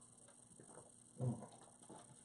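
Faint small clicks of someone sipping a carbonated lemon-lime soda from a cup, then a short hummed 'mm' about a second in.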